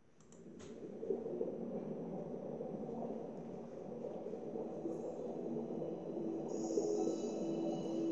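Animated-film underwater ambience fading in, a low, steady wash of water sound. A held musical note enters about halfway and grows louder. It is heard through a TV speaker.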